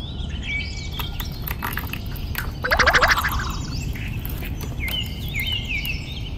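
Small birds chirping over and over in short, quick calls, with a louder, rapid rattling burst about halfway through.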